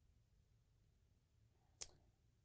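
Near silence: room tone, with one brief click near the end.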